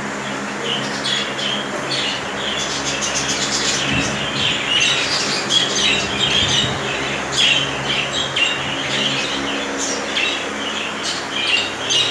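Many budgerigars chattering and chirping at once in a dense, unbroken stream of short, high calls, over a steady low hum.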